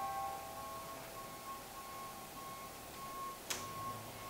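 An electronic keyboard holding a single high note that pulses on and off, with fainter lower notes dying away beneath it. A sharp click sounds about three and a half seconds in.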